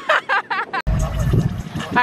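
A person's voice for under a second, then a sudden break into a low rumble.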